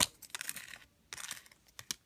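Soft scuffing and a few short clicks as a nail stamper is pressed against an engraved metal stamping plate to pick up the image.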